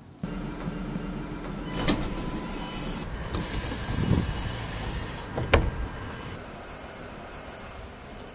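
Mercedes-Benz eCitaro city bus passenger door working: a mechanical run with a clunk about two seconds in, a hiss of air for about two seconds, and a sharp clunk at about five and a half seconds, then a quieter steady run.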